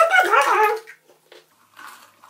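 A homemade carrot clarinet with a plastic funnel bell, blown to give a short wavering tone that slides up and down in pitch for under a second, followed by faint breathy puffs.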